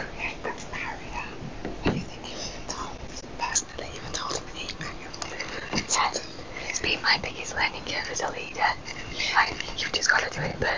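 People whispering and talking in low voices, in short broken snatches.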